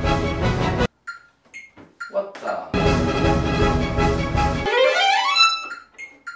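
Violin playing a fast virtuosic passage while practising up-bow staccato. The playing breaks off abruptly about a second in, picks up again about three seconds in, and ends in a quick rising run up to a high note. A deeper sound fills the low end under the two dense stretches.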